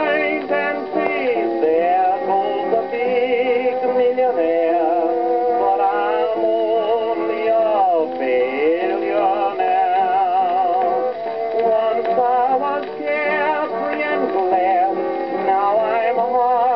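A Depression-era country-and-western song playing from a 78 rpm shellac record on an acoustic horn gramophone, its melody wavering with heavy vibrato. The sound has no high treble, as is usual for an acoustic gramophone.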